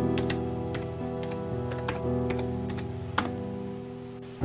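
Typing on a computer keyboard: irregular, quick key clicks, over slow instrumental background music.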